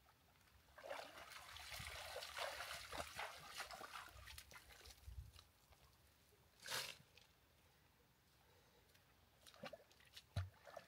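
Faint, distant sloshing and splashing of a person wading through a shallow river while dragging a clump of brush and debris, with one short louder noise about two-thirds of the way through.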